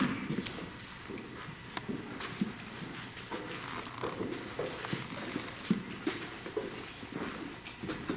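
Footsteps on a hard floor: irregular knocks and scuffs as people walk.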